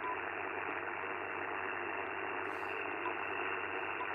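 Icom IC-705 transceiver's speaker hissing with steady band noise on 40-metre lower sideband, no station heard. Two faint short beeps come from touchscreen taps, one at the start and one about three seconds in.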